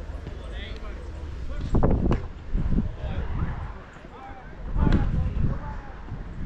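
Indistinct voices calling out over a steady low rumble of wind on the microphone, with two louder bursts about two seconds in and again near five seconds.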